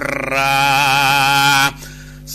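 A man chanting a Thai Buddhist sermon in a melodic recitation, holding one long wavering note for about a second and a half before breaking off.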